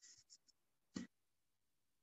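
Near silence, with a few faint ticks at the start and one short click about a second in.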